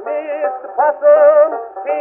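Kazoos buzzing a wavering blues melody on a 1924 acoustic-era Edison Diamond Disc, the sound narrow and boxy with no deep bass or high treble.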